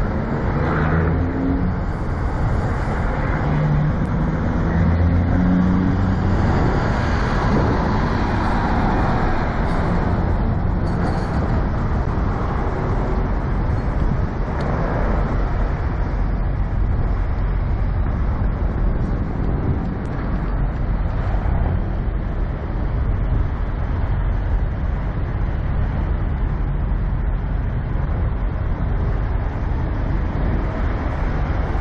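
Semi-truck diesel engine rumble, steady and low, with a pitched engine note climbing in steps during the first few seconds.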